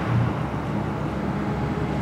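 Steady outdoor background noise by a highway, with a low rumble like road traffic or wind on the microphone.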